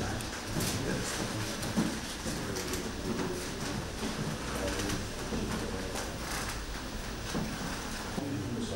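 Faint, indistinct voices of people talking in the background of a quiet room, with a steady low hum and a few light clicks.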